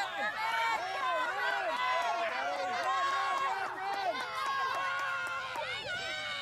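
Many spectators shouting and cheering over one another, with no single voice standing out. The noise rises suddenly at the start and stays loud.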